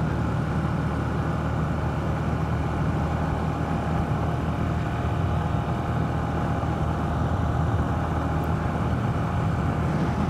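125 cc motorcycle engine running steadily at light throttle, cruising at about 60 km/h in sixth gear, heard from on the bike. The note holds even with no revving or gear change.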